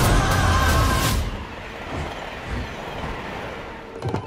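Dramatic film-score music that cuts off abruptly about a second in, followed by the steady rushing noise of a high-speed bullet train.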